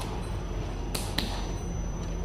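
Steady low background hum with a few short, sharp clicks, two of them close together about a second in.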